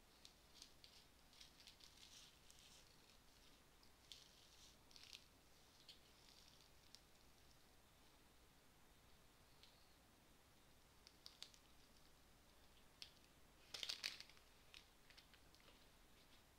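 Near silence: faint room hiss with scattered soft ticks and rustles, and a louder brief rustle about fourteen seconds in.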